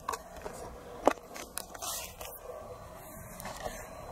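Faint handling noise of a handheld camcorder being turned, with light irregular scraping and one sharp click about a second in.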